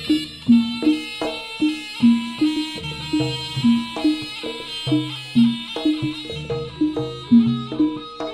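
Jaranan ensemble music: a reedy shawm-like wind instrument (slompret) playing a continuous nasal melody over a steady beat of kendang drum strokes and pitched gong-chime notes.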